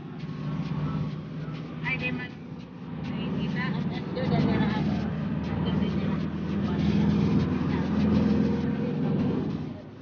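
Engine and road noise of a moving vehicle heard from inside the cabin: a steady low drone that grows louder about four seconds in, with brief indistinct voices early on.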